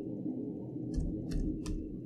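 Computer keyboard keystrokes: about four separate key clicks in the second half, over a steady low hum.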